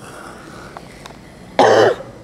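A single short, loud cough near the end, following a stretch of quiet room tone.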